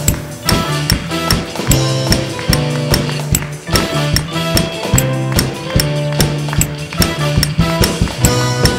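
Live worship band playing an instrumental passage without singing: drum kit with a steady run of hi-hat ticks, electric bass holding low notes, keyboard and electric guitar.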